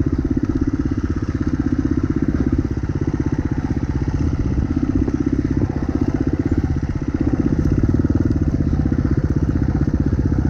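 Dirt bike engine running at low revs under light throttle while riding a rocky trail, a steady chugging of exhaust pulses with small rises and dips in throttle.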